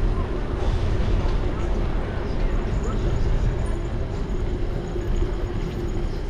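Wind noise on the microphone of a bike-mounted GoPro during a street ride, deep and gusting, with the bicycle rolling over pavement. The voices of people on the street can be heard.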